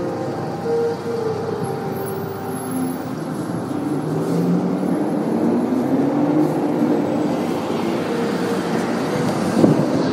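Steady road traffic noise with vehicle engines running, their pitch drifting, growing a little louder partway through. A couple of sharp knocks come near the end.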